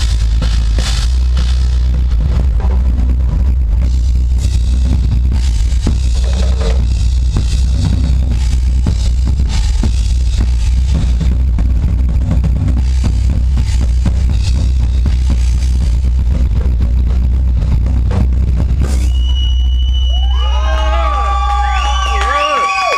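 Live industrial metal drumming: a drum kit played hard over a heavy, steady deep bass backing, with dense drum and cymbal hits. Near the end, wavering whistle-like tones come in, and the bass cuts off at the close.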